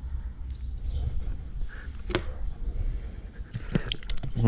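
Low, steady wind rumble on the microphone, with a few sharp clicks from a metal spatula and a plastic mustard bottle being handled: one about two seconds in and two close together near the end.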